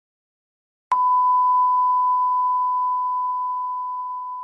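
Silence, then about a second in a single steady electronic beep: one high-pitched tone that starts abruptly and holds without a break, fading only slightly.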